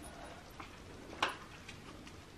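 Quiet room tone with a single short, sharp click a little over a second in.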